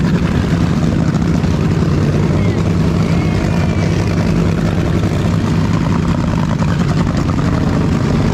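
Steady, loud engine drone with a constant low hum, unchanging in pitch and level.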